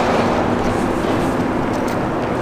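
Gusty wind buffeting the camera microphone: a steady, loud rumble of noise.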